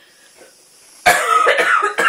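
A black-and-white cat giving a loud, rough chirping call that starts suddenly about a second in.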